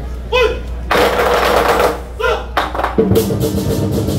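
Drummers shout two calls, with a second-long noisy rush between them. About three seconds in, a fast, dense roll on large Chinese barrel drums begins.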